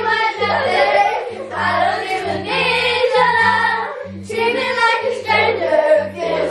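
A group of children singing together loudly to a strummed acoustic guitar, with a low note pattern that changes about every half second underneath and a brief dip in the singing about four seconds in.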